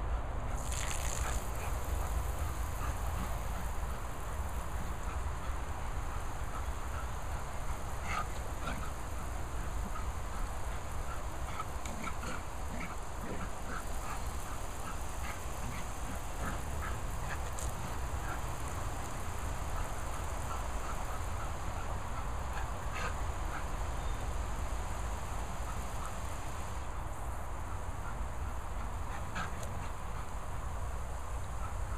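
Garden hose jet spraying water across a lawn, a steady hiss, with wind rumbling on the microphone. Short faint chirps and a few sharp clicks are scattered through it.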